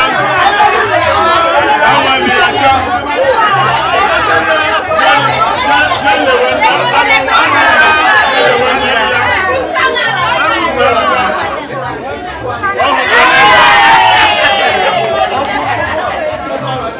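A group of women talking and calling out over one another in lively chatter. One voice rises louder above the rest near the end.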